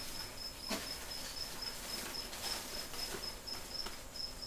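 A cricket chirping in a fast, even train of high chirps, with faint handling rustle of paper packing and a light knock under a second in.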